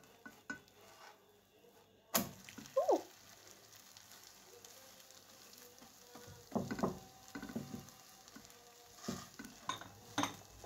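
Okonomiyaki batter of shredded cabbage and egg sizzling in a nonstick frying pan, the sizzle starting suddenly about two seconds in. A silicone spatula pushes and scrapes against the pan in a few short strokes.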